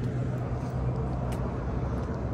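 Diesel engine of a fire engine idling with a steady low hum, over a haze of road noise.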